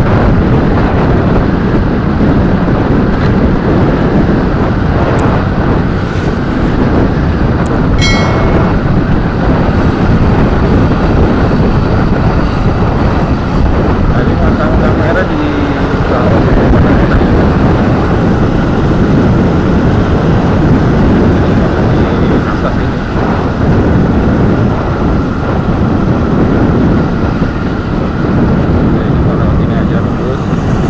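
Steady wind rush on the microphone of a camera carried on a moving motorcycle, blended with the drone of engine and tyre noise in traffic. A brief high-pitched tone sounds about eight seconds in.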